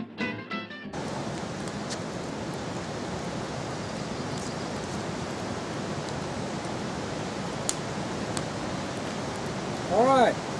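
Background music stops about a second in. A steady, even rushing noise follows, with a few faint sharp crackles from a small campfire burning trash.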